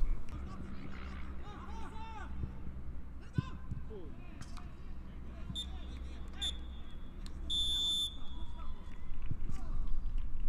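Referee's pea whistle blown twice briefly and then once longer, the full-time whistle. Distant shouts from players come a few seconds before it.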